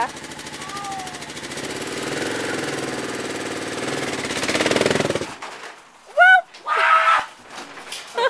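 Kawasaki dual-sport motorcycle's single-cylinder engine running at low revs as it is ridden up a ramp into a trailer, getting louder toward the top, then shut off about five seconds in. Loud shouts follow soon after.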